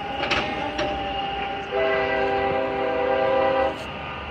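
A BNSF freight locomotive's air horn sounds one blast of about two seconds, several steady notes together in a chord, starting nearly two seconds in and cutting off shortly before the end.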